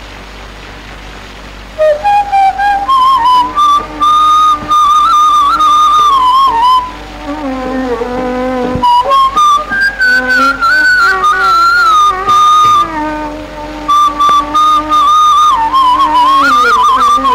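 Bamboo flute playing an ornamented melody in Carnatic style, its notes bending and gliding, entering about two seconds in after a brief quieter moment, with short breaks between phrases. A lower accompanying instrument line sounds beneath it.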